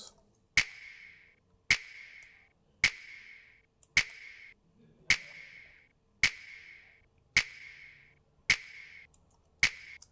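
A soloed hip-hop clap sample playing back on its own: nine sharp claps about a second apart, each with a short reverberant tail. Its upper mids are boosted with an EQ band near 1.5 kHz, which brings the clap forward.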